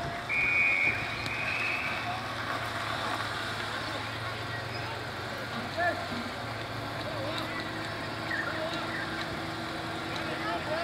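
Australian rules football umpire's whistle blown once near the start, a steady high tone held for about a second and a half, over scattered shouts from players and onlookers and a steady low rumble.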